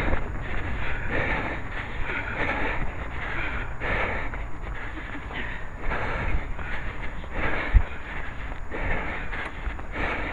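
A running headcam's microphone buffeted by wind, with the wearer's heavy breathing coming in repeated pulses and footfalls on the path; one sharp thump near the end.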